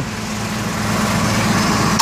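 A truck engine running steadily with a loud hiss over it, growing slightly louder.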